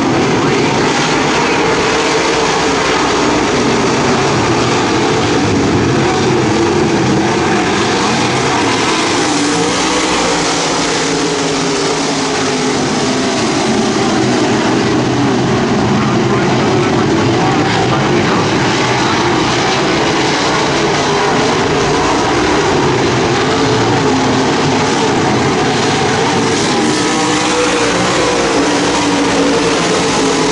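A pack of dirt modified race cars' V8 engines running together on the track, a steady loud drone whose pitch wavers up and down as the cars circle.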